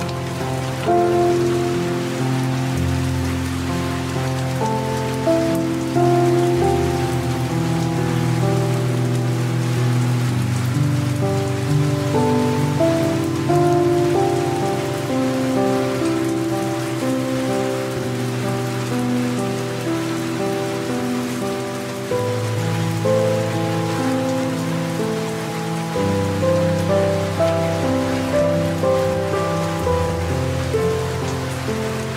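Soft, slow piano music playing held chords that change every few seconds, over a steady hiss of light rain.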